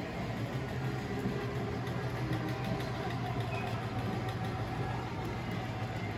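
Steady low hum of room ambience, even throughout with no distinct events.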